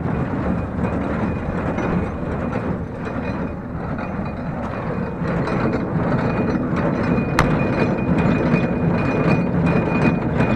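Welger AP 53 small square baler running off a Fordson Dexta tractor's PTO as it takes in straw, with a steady mechanical clatter of its moving parts over the tractor engine. A faint steady high whine runs through it, and there is a single sharp click about seven seconds in.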